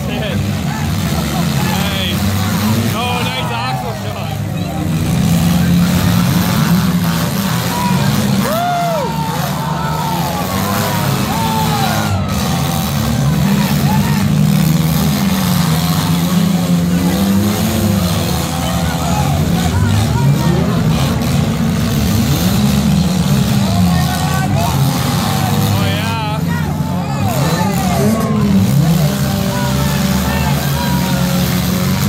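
Engines of several small demolition derby cars running together, their revs repeatedly rising and falling as the cars drive and ram each other.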